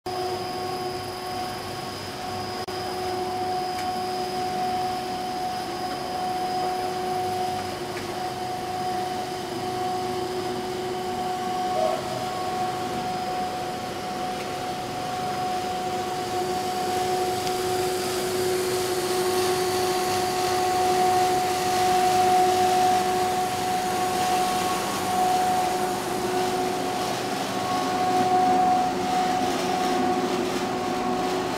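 WPC plastic profile extrusion line running: a steady machinery drone of motors and fans, with a few held tones as a whine over the noise, growing slightly louder in the second half.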